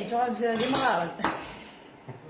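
A kitchen knife clicks against a wooden cutting board while raw chicken is cut up, over a short stretch of a voice in the first second or so.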